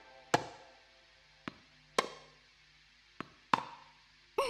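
Cartoon tennis ball being hit back and forth in a rally, five sharp pops about a second apart, loud strokes alternating with softer ones.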